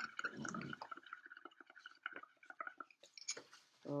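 Faint wet bubbling and small crackling pops of soap bubbles in watery paint mixed with washing-up liquid, as air is blown through a straw into the pot.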